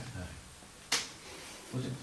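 A single sharp click, the kind a pen, cup or hand on a tabletop makes, about a second in, over quiet room tone with faint murmured voices.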